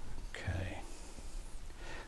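A brush swishing softly as it pushes oil paint and painting oil together on a glass palette, with a short breathy murmur from the painter near the start.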